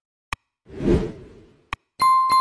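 Animated button sound effects: a sharp mouse-click sound, then a whoosh that swells and fades, then a second click.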